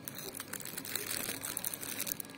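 Plastic wrapping crinkling close to the microphone: a dense, irregular rustle full of small crackles.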